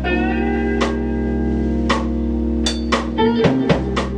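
A rock band playing an instrumental passage live: electric guitars over held keyboard chords, with drum and cymbal hits about once a second that quicken into a short fill near the end.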